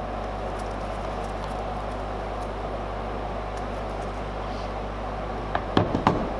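Steady background hum and hiss with no distinct event, and a couple of short faint knocks just before the end.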